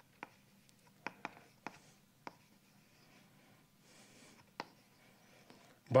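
Chalk tapping and scratching on a blackboard as formulas are written: a string of short, sharp taps, several in the first couple of seconds and then sparser.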